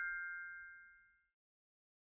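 The ringing tail of a bright, bell-like ding sound effect from a subscribe-and-notification-bell animation, a few clear tones fading away about a second in.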